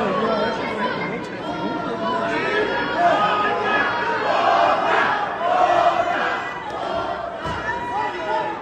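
Crowd of spectators in a small arena shouting and chattering, many voices overlapping, swelling louder about halfway through.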